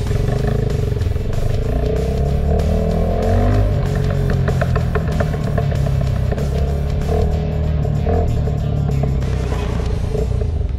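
Background music over a motorcycle engine. The engine rises in pitch as the bike accelerates over the first few seconds, then runs fairly steadily.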